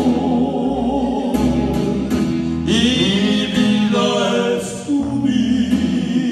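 Men singing a song together into microphones, holding long notes with vibrato, over instrumental accompaniment with a steady bass line.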